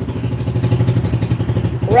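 A motor running steadily: a low hum with a fast, even pulse.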